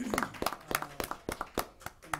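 Scattered hand claps from a small group, irregular and thinning out near the end.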